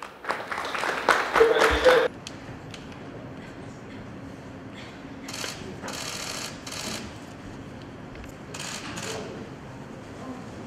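Applause for about two seconds that cuts off abruptly, then a quiet room with several short bursts of rapid camera shutter clicks as the documents are signed.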